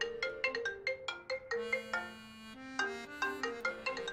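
Soft melodic music of quick struck, marimba-like notes over sustained lower notes, a light tune that carries on without a break.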